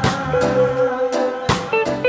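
Live band playing, with electric guitar, keyboards and drum kit: drum and cymbal hits mark the beat under one long held note.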